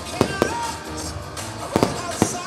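Aerial fireworks bursting, with a pair of sharp bangs soon after the start and another pair near the end, over background music.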